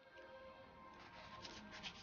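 Faint background music with soft scratchy rubbing of floral tape being stretched and wound around a rose stem, the rubbing coming in a quick cluster in the second half.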